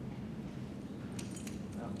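A brief metallic jingle, a few quick clinks close together about a second in, over a steady low hum.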